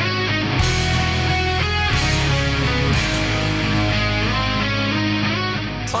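A heavy rock song led by electric guitar, with a full band behind it and sharp crashes about half a second, two and three seconds in.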